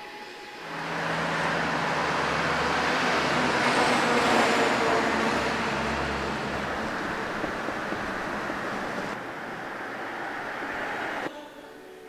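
Street traffic: a vehicle passes with a low engine hum, swelling to its loudest about four seconds in and then easing off, before the sound cuts off suddenly near the end.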